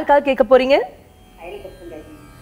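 A woman speaking Tamil, with a short pause about a second in.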